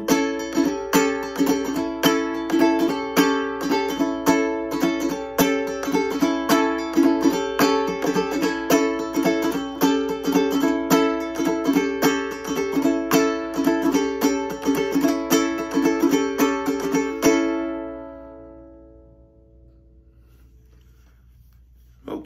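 A ukulele is strummed in a steady rhythm through the song's instrumental ending. A last chord, struck about three-quarters of the way through, rings out and fades away, leaving faint room tone.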